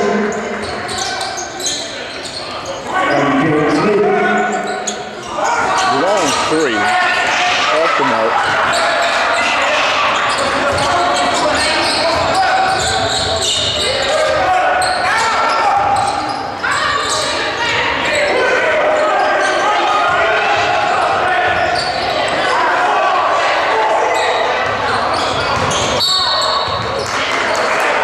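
Sounds of a basketball game in a gymnasium: a basketball dribbling on the hardwood court, with overlapping voices of players, coaches and spectators carrying through the hall.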